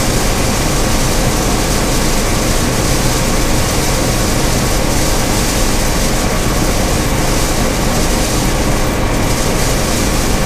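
Gleaner F combine harvesting corn with its 430 corn head: the engine and threshing machinery run under load as one loud, steady noise that does not change.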